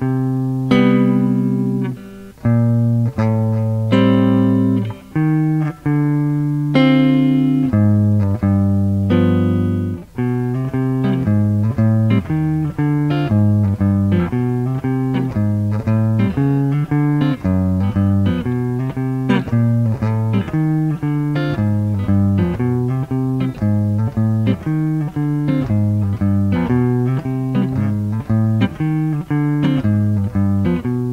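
Clean electric guitar playing a jazz walking bass line with chords over a I–vi–ii–V progression in C (Cmaj7, Am7, Dm7, G7), stepping into each chord's root from a half step above or below. The first ten seconds have longer held notes, then the line walks evenly at about two notes a second.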